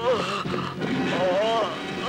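A man crying out in drawn-out, wailing shouts whose pitch rises and falls, with a long cry in the second half.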